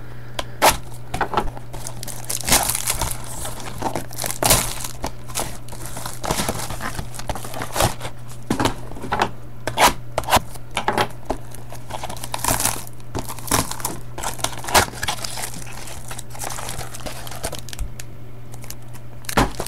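Foil trading-card pack wrappers crinkling and tearing as packs are handled and opened, in irregular crackles throughout. A steady low hum runs underneath.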